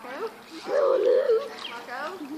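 A voice calling "Marco" as in the game Marco Polo, the call drawn out for about half a second, with a few short bits of other talk around it.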